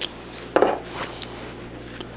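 A thin stirring stick clinking and knocking against a small ceramic bowl while pearl dust and alcohol are mixed into a loose paste: a few light clinks, the loudest a little over half a second in.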